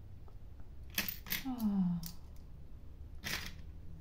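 Light clicks of small plastic craft pieces and pliers being handled on a table, with a short murmured 'hm' falling in pitch about a second and a half in and a brief rustle near the end.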